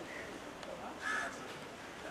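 A single short, harsh bird call about a second in, over a faint murmur of background voices.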